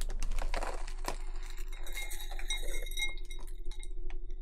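Chocolate cereal flakes poured from a packet into a ribbed glass bowl: a dense clattering patter of dry flakes landing on the glass and on each other. The glass bowl rings briefly partway through, about two seconds in.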